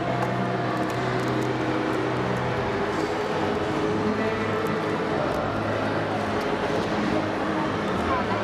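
Steady ambience of a large exhibition hall: a dense wash of background noise with sustained low tones that shift in pitch about three seconds in, and faint light ticks from small robot-kit parts being handled.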